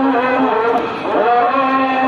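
A man's voice chanting a religious invocation in long, drawn-out held notes, with a brief break about a second in.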